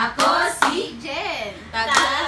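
A group of women clapping their hands in time to a chanted clapping-game song, mixed with their voices.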